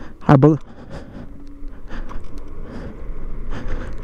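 Varla Eagle One dual-motor electric scooter pulling away gently in Eco mode: a rush of wind and road noise that builds steadily as it gathers speed.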